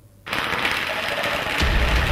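Fireworks crackling densely; the crackle starts suddenly about a quarter second in, and a deep rumble joins about a second and a half in. Music plays underneath.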